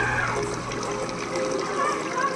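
Swimming-pool water lapping and sloshing around people standing in it, with faint voices behind.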